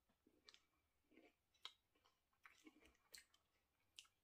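Faint chewing of a mouthful of crispy cookies-and-cream chocolate bar, a scatter of soft crunching clicks.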